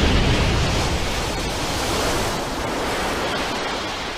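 Cartoon energy-blast sound effect: a long, steady rushing rumble, the tail of an explosion, slowly fading.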